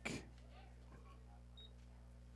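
Near silence: a faint, steady low hum on the broadcast audio, with the last of the announcer's voice fading out at the very start.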